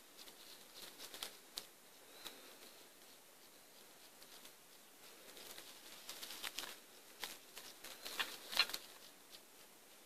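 Faint, irregular clicks and crackles with a few short, high chirps, busiest and loudest between about six and nine seconds in.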